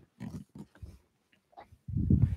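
A few short, low, muffled sounds close to the microphone, three in the first second and a louder one starting near the end.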